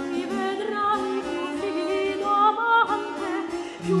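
Baroque aria for voice and bass violin: a soprano sings held, vibrato-laden notes over the bass violin's lower line, and a new sung word starts near the end.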